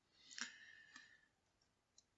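Near silence with a faint click about half a second in and a fainter one about a second in.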